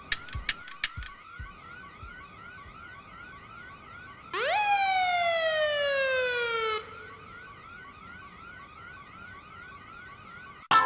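Police car siren on a fast warbling yelp, about three rises and falls a second, with a louder single whoop about four seconds in that shoots up and then slides slowly down for over two seconds before cutting off. A few sharp clicks sound in the first second.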